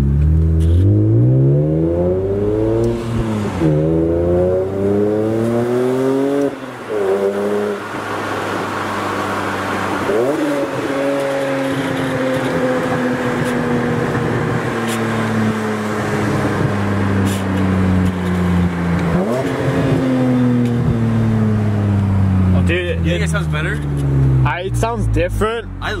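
BMW E46 M3's S54 inline-six heard from inside the cabin, through a custom exhaust with a Top Speed muffler and added resonators that makes it sound way more refined and less raspy. It revs up hard twice, with an upshift between, in the first seven seconds, then the engine note falls slowly for several seconds, twice, as the car eases off.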